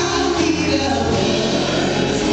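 Live gospel song: a woman's lead vocal sung into a handheld microphone, with backing singers and steady instrumental accompaniment underneath.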